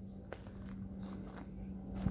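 Faint outdoor background: a steady low hum with a low rumble, and one small click about a third of a second in.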